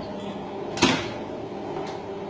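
Bakery dough sheeter running with a steady motor hum as it rolls out a sheet of dough, and a single sharp clack a little under a second in.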